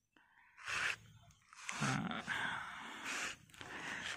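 A person's breathing close to the microphone: a short breath about half a second in, then a longer, softer breath out.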